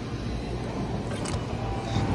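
Steady background noise with a low hum under an even hiss, and no distinct single event.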